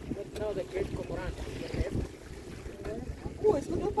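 A boat running across open lake water, with a low rumble and wind buffeting the microphone. Faint voices talk underneath.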